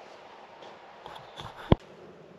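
Quiet room hiss with a few faint clicks, then a single sharp knock near the end.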